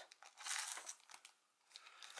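Faint, short rustle in the first second as a soft tape measure is pulled from its round plastic case and handled, then near silence.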